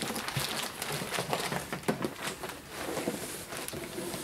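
Cardboard and plastic air-pillow packing rustling and crinkling as a boxed microphone set is pulled out of a shipping carton, with many small irregular crackles and scrapes.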